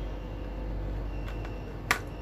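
A single sharp click near the end as a USB plug is pushed home into a power bank's port, over a steady low hum.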